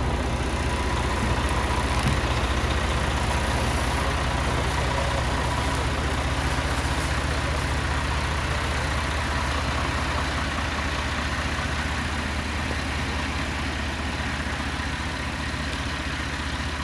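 An engine idling steadily, its low, even running fading slightly toward the end.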